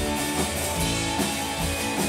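Britpop-style indie rock band playing live: strummed electric and acoustic guitars over bass and a drum kit with a steady beat.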